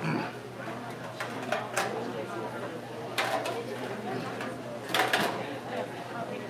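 Indistinct background chatter of people in a busy bar room, with a few short, sharp clatters about one and a half, three and five seconds in.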